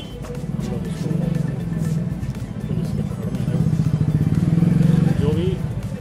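A man speaking in Hindi over street noise from passing motor traffic.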